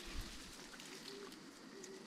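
Faint rustling and crackling of apple-tree leaves and twigs being handled, with a dove cooing softly a few times.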